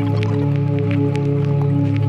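Ambient music from a eurorack modular synthesizer: a sustained low drone chord, with short, scattered clicks sounding over it.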